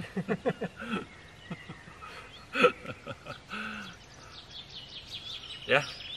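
Small birds chirping in quick, high calls, mostly in the second half, under brief bursts of men's voices.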